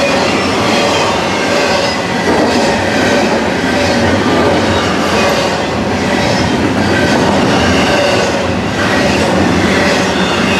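Freight cars of a CN intermodal train rolling past close by: a steady, loud rolling of steel wheels on rail, with thin squealing tones from the wheels coming and going.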